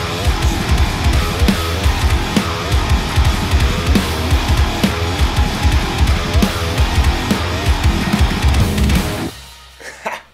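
Fast heavy-metal music: an extended-range electric guitar played over a backing track with drums. The music stops about nine seconds in and dies away.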